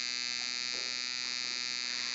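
A steady electrical buzz with a thin high whine, unchanging throughout: the recording's own background noise heard in a pause in the singing.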